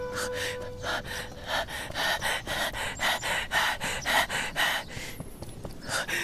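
A person's rapid, rhythmic panting breaths, about three a second, easing off shortly before the end. A held music note fades out about a second in.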